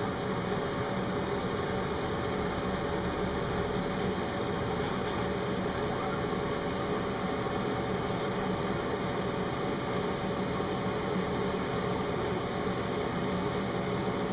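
Steady room noise: an even hiss with a faint low hum, like a fan or air conditioner running, and no distinct events.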